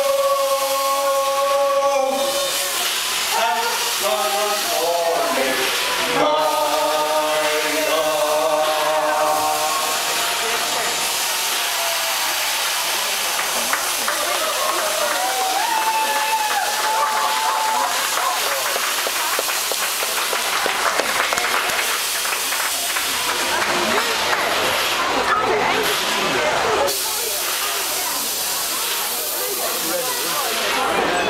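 Voices holding the last sung notes of a song, then a long steady hiss of vapour jetting from the Man Engine, a giant mechanical miner puppet, over crowd noise.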